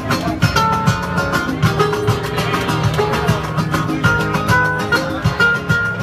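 Live flamenco acoustic guitar strummed in a steady, fast rhythm, playing an instrumental passage with no singing.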